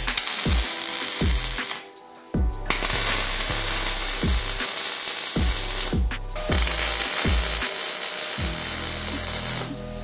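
MIG welding arc crackling steadily as steel frame tubing is welded, in three runs of two to four seconds with short breaks between. Background music with a regular beat plays under it.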